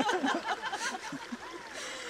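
A shallow mountain stream running over stones, with a voice talking and laughing softly through the first second or so.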